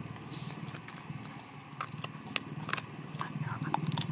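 A dog chewing a meaty bone: irregular sharp cracks and clicks of teeth on bone, over a steady low hum.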